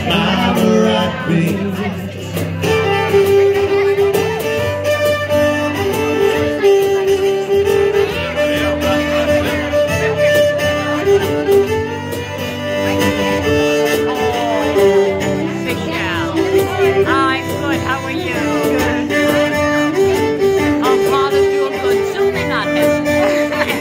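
Live acoustic band playing an instrumental break: a fiddle carries the melody in sustained, sliding notes over strummed acoustic guitar and hand percussion.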